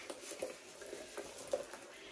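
A few faint clicks and rustles from handling a chrome purse's metal chain strap and clasps, the sharpest click right at the start.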